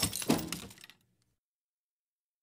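The tail of a crash with shattering glass, a few last clattering pieces dying away within the first second, then dead silence.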